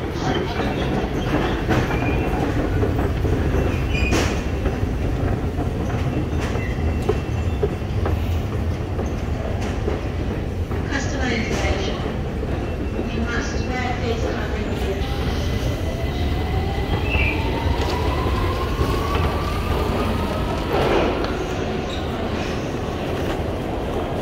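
London Underground Victoria line train running below the station: a steady low rumble, with a whine that rises smoothly in pitch for about six seconds from about fifteen seconds in as a train accelerates.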